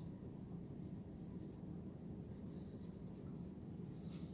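Small paintbrush stroking paint into the grooves of wooden dollhouse siding: faint, quick scratchy strokes over a steady low hum.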